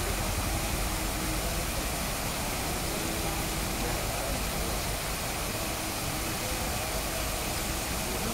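Steady, even rushing noise of water.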